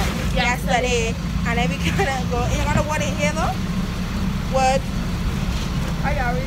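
Steady low rumble of a bus's engine and road noise heard inside the passenger cabin, with voices talking over it.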